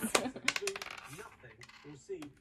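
A die thrown onto a table, clattering in a quick run of small clicks that die away as it settles.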